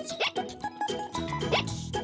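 A little girl's cartoon hiccups: two short, sharp squeaks that slide upward, just over a second apart, over light background music.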